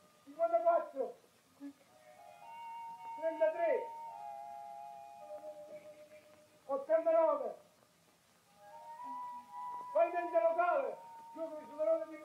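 Soft film score with long held woodwind-like notes, broken up by short wordless vocal sounds four times.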